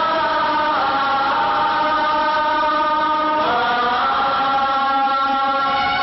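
Bengali film song: long held sung notes, the pitch gliding up to a higher note about three and a half seconds in.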